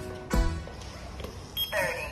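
Background music with a steady beat. Near the end a short high electronic beep starts, the temperature kiosk signalling a reading.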